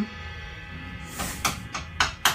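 Steady low amplifier hum with a few short, scattered hits on a drum kit in the second half.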